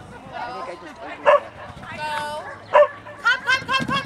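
A dog barking: one sharp bark about a second in and another near three seconds, then a quick run of high-pitched yips near the end.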